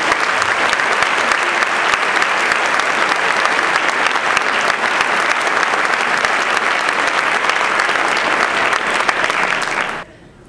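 Audience applauding steadily; the clapping cuts off suddenly at the end.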